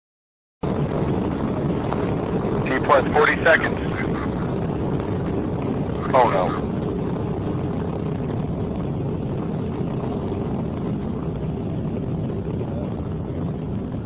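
Rocket launch noise: a dense, steady roar from the rocket's motors that starts abruptly about half a second in and holds unchanged, with brief high pitched voice-like sounds around three and six seconds.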